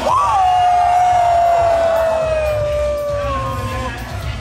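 One long held shout from a spectator, jumping up at the start and then sliding slowly down in pitch for nearly four seconds, over DJ music with a steady low beat.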